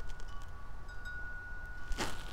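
Wind chimes ringing in the wind: a steady ringing tone, struck afresh about a second in, over a low rumble of wind.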